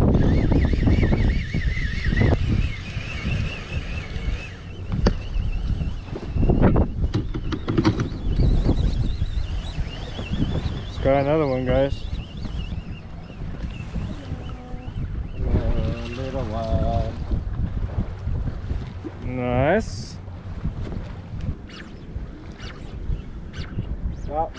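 Wind buffeting the camera microphone on an open boat, with a steady low rumble of wind and water. A few short, indistinct voices cut in about halfway through.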